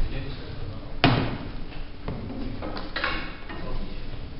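A single sharp knock about a second in, the loudest sound, followed by a couple of fainter knocks, over low background chatter.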